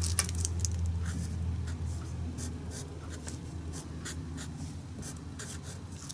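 A black marker scratching out short, irregular strokes as letters are written on gesso-coated paper, over a steady low hum.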